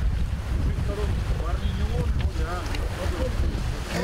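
Wind buffeting the microphone, a steady low rumble, with faint voices of people talking in the crowd.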